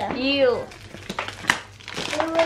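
The thin wrapper of a small advent-calendar chocolate crinkling as hands peel it open, with a run of sharp crackles in the second half.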